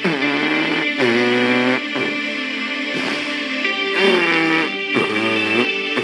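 Radio music playing: a melodic line that glides in pitch over a beat of about one stroke a second.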